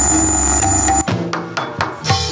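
Live Javanese gedruk music ensemble playing: a held, ringing chord with metallic percussion that cuts off about a second in, followed by a few separate drum strikes.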